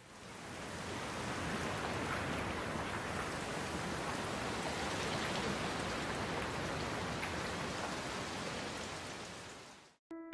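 A steady, even rushing noise, with no tone or rhythm in it, fading in over the first second and fading out near the end.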